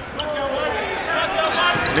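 Basketball dribbled on a hardwood court, several bounces, over arena crowd noise and voices.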